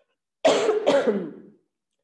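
A woman coughing twice in quick succession, two loud coughs about half a second apart.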